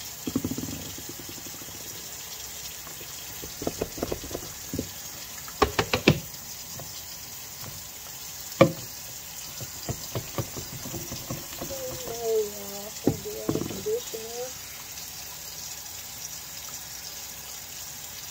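The pump dispenser of a nearly empty conditioner bottle clicking and knocking in scattered bursts as it is pumped and handled, with one sharp click a little before halfway the loudest. Wet conditioner is squished through hair. A short wavering vocal sound comes about twelve seconds in.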